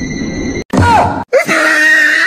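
A cat meows with a call that falls in pitch, then breaks into a long, loud, drawn-out yowl during a tug-of-war over a cloth. Before that, a noisy stretch with a steady high whine cuts off suddenly about half a second in.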